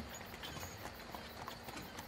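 Faint clip-clop of horse hooves from a horse-drawn carriage, heard low under a pause in the narration.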